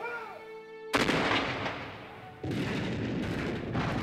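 Cannon fire: a sudden loud boom about a second in that dies away, then a second blast about two and a half seconds in that carries on loudly. Soft music cuts off just before the first boom.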